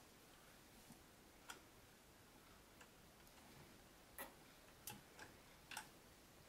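Near silence with a few faint, sharp clicks or taps, irregularly spaced and more frequent in the second half.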